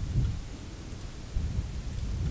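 Low, uneven rumble of background noise with a faint knock about a second and a half in.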